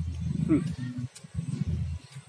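A man's low, closed-mouth "hmm" while chewing durian, in several short stretches with a brief rising voiced tone about half a second in.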